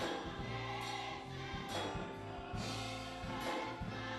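Gospel choir singing with band accompaniment: held chords over steady bass notes, with a drum or cymbal stroke about once a second.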